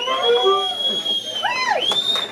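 A person whistling one long, high, steady note that slides up at the start and down after about a second and a half, over the fading last notes of a blues band. Near the end comes a short whooping shout and a second rising whistle: cheers at the end of the song.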